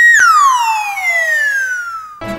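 Descending whistle sound effect: a pitched tone that holds for a moment, then glides steadily downward in pitch for about two seconds, with a second, lower tone dropping faster beneath it.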